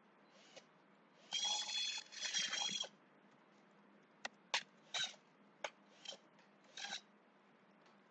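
Two scraping rubs, starting a little over a second in and lasting about a second and a half together, then about six separate sharp clicks and taps of a computer keyboard and mouse.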